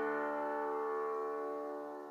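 Grand piano's final chord left ringing at the end of the piece, its many notes slowly fading away.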